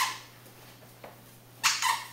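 A dog barking in short, sharp barks: one right at the start, then a quick pair near the end.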